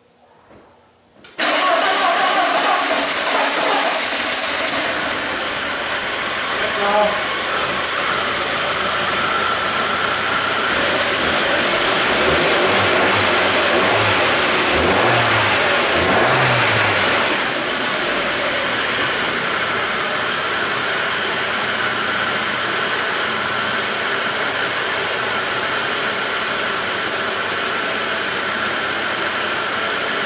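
VW Passat 1.8-litre turbo four-cylinder engine starting about a second and a half in, on its first start after a valve cover gasket replacement, then running steadily at idle. It is a little louder for the first few seconds before it settles.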